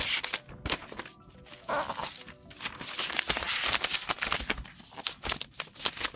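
Thin protective wrap sheet rustling and crinkling, in stretches, as it is handled and slid off a laptop, over quiet background music.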